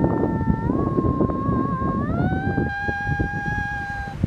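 A woman singing long, high held notes without words, the pitch shifting about half a second in and again about two seconds in, with wind rumbling on the microphone underneath.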